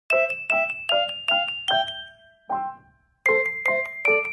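Background music: a light tune of short, ringing notes, about two or three a second, with a brief pause a little before the end.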